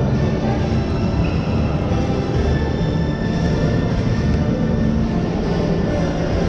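Background music that runs steadily, heavy in the low end.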